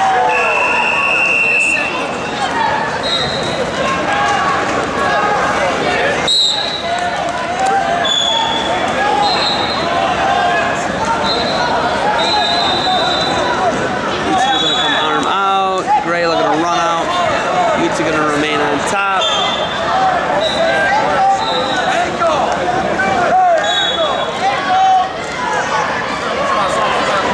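Crowd and coaches' voices filling a gym, with one man shouting loudly midway. A single steady whistle blast about a second in, as a referee starts wrestlers from the down position, and short high squeaks of wrestling shoes on the mat throughout.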